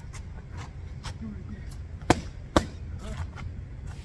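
Two boxing-glove punches landing on a focus mitt, sharp slaps about half a second apart some two seconds in, over a low steady rumble.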